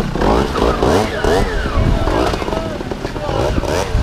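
Gas Gas trials motorcycle engine revved in repeated short blips, pitch rising and falling again and again, as the bike is worked up and over boulders.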